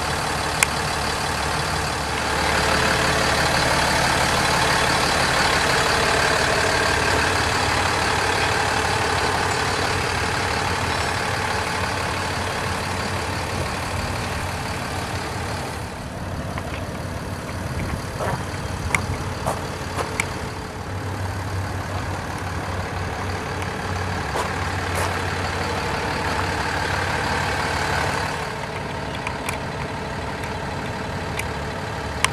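Peterbilt 337 medium-duty diesel truck idling steadily, with a low hum throughout. The sound gets louder for several seconds early on, then settles lower after a cut, with a few faint clicks.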